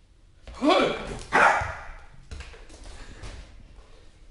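Jack Russell terrier barking twice during play, two loud barks about half a second apart near the start, the first falling in pitch.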